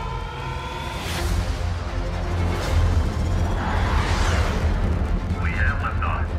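Film score with a deep rocket-engine rumble that builds about a second in and stays loud: a rocket igniting and lifting off.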